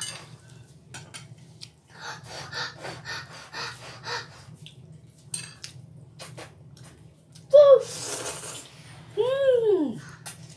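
A person eating jjapaguri noodles: chewing and mouth noises with light clicks of a fork on a plate, a slurp of noodles about eight seconds in, and a short hum that rises and falls in pitch near the end. A faint low steady hum runs underneath.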